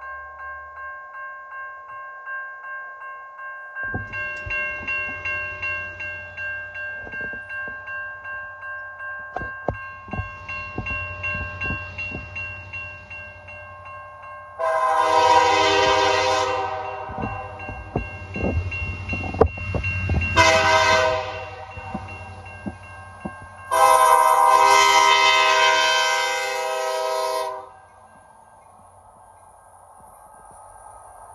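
Grade-crossing warning bell ringing in a steady pulse while an approaching diesel freight train adds a low rumble and rail clicks. The CN SD75I locomotive's air horn then sounds for the crossing: a long blast, a short one and a long one, louder than everything else.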